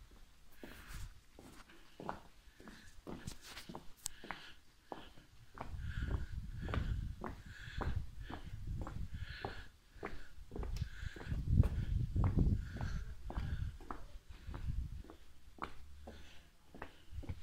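Footsteps on a cobblestone lane, about two steps a second, with bouts of low rumble partway through.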